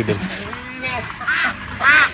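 Ducks quacking: two short, loud calls in the second half.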